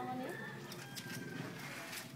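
Bird calls over a low murmur of background voices.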